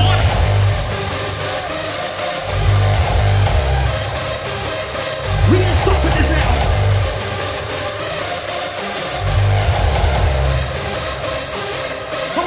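Loud hard-dance electronic music from a DJ set. A heavy distorted kick and bass come in at the start and run in sections, dropping out briefly a few times, under a dense layer of synths and a gliding pitched sample near the middle.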